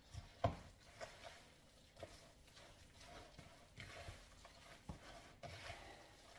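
Hands mixing chunks of meat with grated onion and herbs in a bowl for a shashlik marinade: faint, irregular soft knocks and wet handling sounds, the loudest about half a second in.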